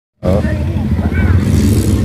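Open tour jeep's engine running with a steady low rumble, with snatches of people's voices over it.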